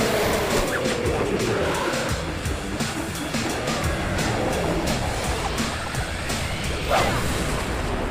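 Cartoon action soundtrack: music with a steady beat under rushing, wind-like whoosh effects of a swirling cyclone attack. A long falling tone runs through the first few seconds, and a sharp rising whoosh comes near the end.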